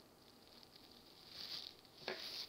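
Near silence with faint handling sounds: a knife working through frozen ice cream sandwiches on plastic wrap, with one brief soft scrape about one and a half seconds in.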